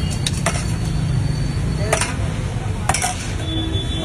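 A steel spoon clinking against a stainless steel plate and bowls as curd is spooned onto puris: about four sharp, ringing clinks at uneven intervals. A steady low rumble runs underneath.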